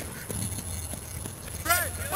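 Footsteps of people running on a playing field, faint and irregular over a low rumble. Near the end a voice shouts a call.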